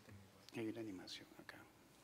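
Faint, off-microphone speech: one short murmured phrase about half a second in, over a quiet room background.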